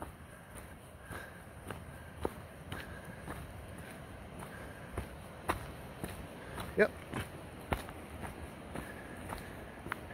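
Footsteps of a hiker walking on a dirt trail covered in dry leaves, sharp steps about twice a second, with a short spoken word about seven seconds in.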